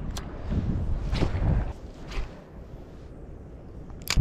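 Wind buffeting the microphone with a low rumble, stronger in the first half, broken by three brief sharp sounds about a second apart.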